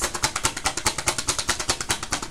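A tarot deck being shuffled by hand: a fast, even run of card clicks, about fifteen a second.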